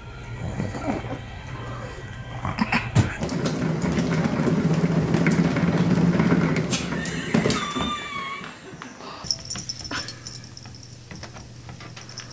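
Cat exercise wheel spinning with a steady rolling rumble as a kitten runs inside it, the loudest sound, then a short wavering animal cry about eight seconds in.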